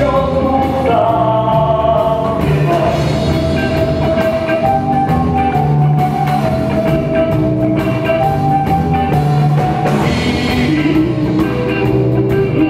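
A live rock band playing loudly and steadily, with drum kit and electric guitar, and a man singing into a microphone for parts of it.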